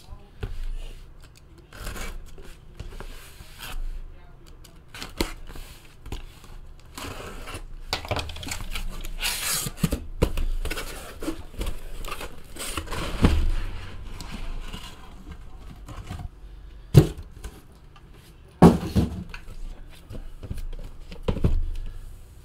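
A taped cardboard shipping case being opened by hand: tape slit and torn, cardboard flaps rubbing, scraping and rustling. A few sharp knocks near the end as the sealed hobby boxes inside are pulled out and set down on the table.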